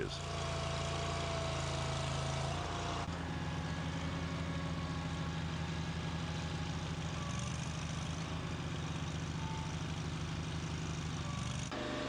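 Engine of a Dingo mini loader running steadily under load as it drives forward and pushes soil with its front blade. The tone shifts abruptly about three seconds in and again near the end.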